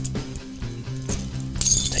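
Soft background guitar music, with light metallic clinks of keys and a steel split ring being handled as a keychain tool is worked off the ring, and a brighter jingle of keys near the end.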